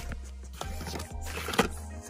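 Small cardboard lip balm cartons and a foil sachet being handled, rustling and knocking together a couple of times, the sharpest about a second and a half in. Steady background music plays underneath.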